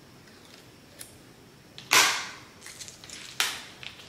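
Two sharp clacks about a second and a half apart, the first the louder, each dying away quickly, with a faint click before them. They come from hard plastic light bars being fitted onto their mounts under a kitchen cabinet.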